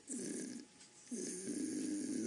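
An elderly man's throaty breathing in a pause between phrases, heard twice: a short breath, then a longer one that runs on into his next words.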